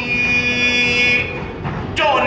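A male voice holds one long note at the end of a line of chanted khon narration. The note is steady for about a second and a half, then fades.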